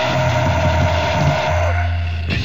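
Melodic doom/death metal demo recording: heavily distorted guitars and bass holding a sustained low chord. About a second and a half in, the upper guitar thins out, leaving a steady low bass note.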